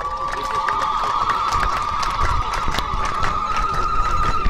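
Ululation from the crowd: one high, warbling trill held for about five seconds and rising slightly in pitch, over scattered clapping and cheering.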